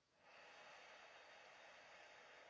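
Near silence: a faint, even hiss that fades in about a quarter of a second in and holds steady.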